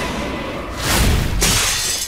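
Glass window shattering as a thrown sword smashes through it: a crash of breaking glass starting just under a second in, in two waves, with shards raining down.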